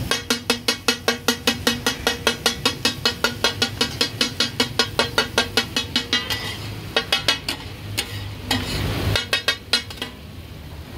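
Metal spatulas striking a flat iron tawa in the rapid taka-tak rhythm, about four ringing strikes a second, chopping and turning minced mutton as it fries with a sizzle underneath. After about six seconds the chopping breaks into scattered strikes, with a short quick run near the end.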